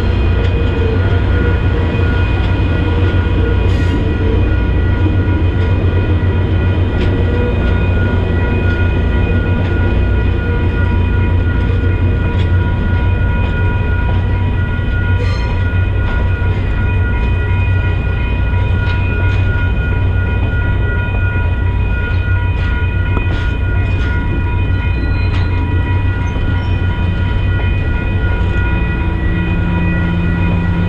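Grand Canyon Railway passenger cars rolling past at a level crossing: a loud, steady low rumble of the passing train, with steady high ringing tones over it and a few brief wheel clicks.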